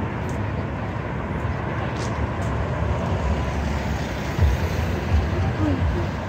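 Steady city road traffic: cars and a van driving past, tyre and engine noise, with the low rumble growing louder in the second half.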